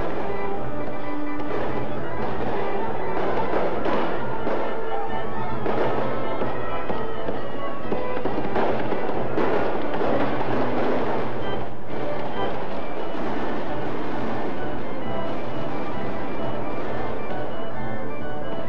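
Fireworks going off repeatedly over a music bed, with held musical notes running under noisy surges from the display.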